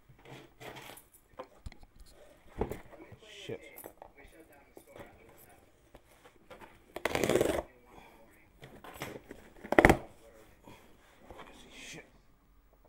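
Hands rummaging through a box of small packaged items: scattered light clicks and rustling, a loud half-second rustle about seven seconds in, and a sharp knock about ten seconds in.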